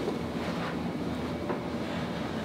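Steady background hiss of room noise, with a faint tick about one and a half seconds in.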